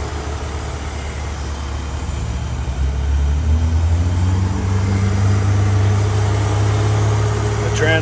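BMW Z4 3.0i's 3.0-litre inline-six engine idling with the hood open, a steady low hum that grows louder and rises slightly in pitch about three seconds in.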